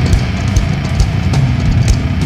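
Nu metal band playing an instrumental passage: heavy distorted guitars and bass under steady drum-kit hits, with no vocals.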